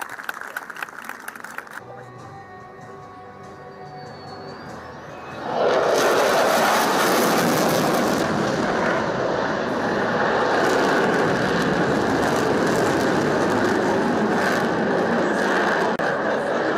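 Roar of an F-16 fighter jet's engine in afterburner during an aerobatic display, setting in abruptly about five seconds in and holding loud and steady; before it, a fainter, thinner sound with some crackle.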